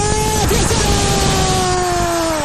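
Football commentator's long, held shout at a goal: one sustained note that slowly falls. It rides over the steady roar of a stadium crowd cheering.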